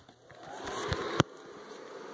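An airblown inflatable's built-in base blower fan starting up. It spins up with a faint whine rising in pitch, then settles into a steady whir, with one sharp click about a second in.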